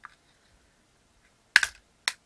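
The thin press-fit plastic base of a cheap solar dancing pumpkin toy clicking and snapping as a screwdriver pries it apart: a faint tick at first, then one sharp, loud double snap about a second and a half in.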